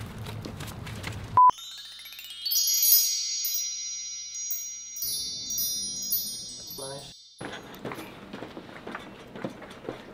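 A short, loud single-pitch beep, then an edited-in chime effect: a quick upward run of high bell-like notes that ring on together for several seconds and fade out.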